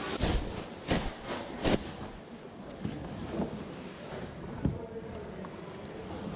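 Rustling and brushing noise on a body-worn action camera as a nylon jacket rubs against it. There are three sharp knocks in the first two seconds and a few softer ones after.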